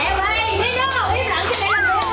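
Comic sound effects: a high-pitched, sped-up chattering voice that sounds like a child's. Near the end, a whistle slides up and then back down.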